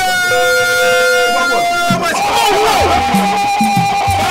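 Ritual procession music: several long notes held at different pitches. From about two seconds a single held note runs on, and a low, steady drum beat comes in near the end.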